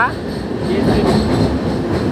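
Train running across a steel truss bridge: a steady rumble of the wheels and carriage, with no clear beat.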